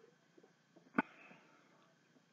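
One short, sharp sniff through the nose about a second in, trailing off in a brief breath.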